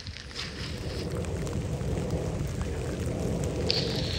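Steady rumbling wind noise on the microphone with the patter of light rain, slowly growing louder.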